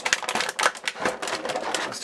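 Clear plastic blister tray crackling in quick, irregular clicks as a small rock-and-chain accessory is worked out of it by hand.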